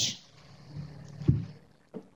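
A voice trailing off at the very start, then quiet room noise with one soft, low thump a little over a second in.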